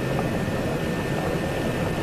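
Steady background noise, a low rumble under a hiss, with no distinct events.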